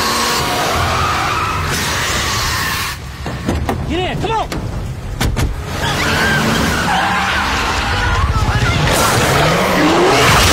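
Monster-movie action soundtrack: a dense mix of cars skidding with tyres squealing, voices and music. About three seconds in the mix thins briefly to a few curving squeals and sharp clicks, then builds back up.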